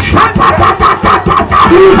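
Fast rhythmic hand-clapping with church music, about four beats a second, each beat carrying a repeated high note, as the congregation breaks into a shout. A short grunted "uh-huh" from the preacher comes in near the end.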